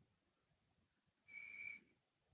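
Near silence, broken about a second and a half in by one brief, faint, high-pitched steady whistle-like tone lasting about half a second.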